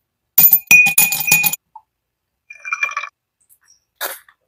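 Ice cubes dropped into an empty drinking glass: a quick run of clinks, each making the glass ring, lasting about a second. A second, quieter rattle follows about two and a half seconds in.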